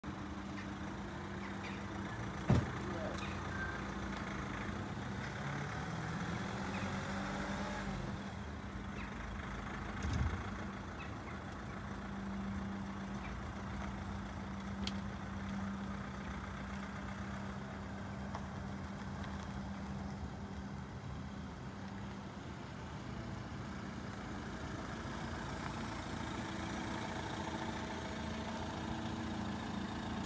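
Renault Master 2.3 dCi box van's four-cylinder turbodiesel engine running as the van is driven slowly around, a steady low hum. Two thumps stand out: a sharp loud one a couple of seconds in and a duller one around ten seconds.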